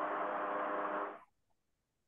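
A burst of hiss over a faint steady hum from a video-call microphone line. It cuts off about a second in.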